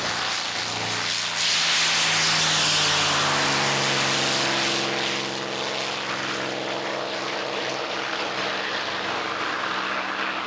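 Mustang-style propeller aircraft taking off at full power. Its engine gets louder about a second and a half in as it passes, then drops in pitch and level as it climbs away.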